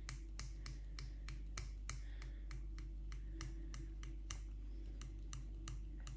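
Plastic Dresden modelling tool pressing texture marks into sugar paste, giving a run of faint, quick clicks, about three or four a second.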